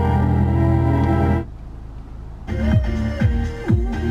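Music from a 2007 Volkswagen Beetle's factory radio as the preset stations are stepped through: organ-like classical music cuts off about a second and a half in, and after a quieter second a different station comes in with other music.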